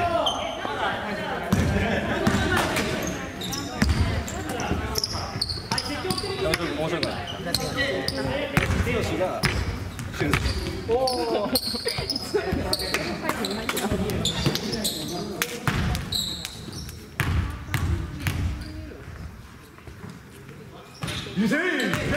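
A basketball bouncing on a wooden gym floor amid steady chatter from players and onlookers, echoing in a large hall, with several short knocks and high squeaks scattered through.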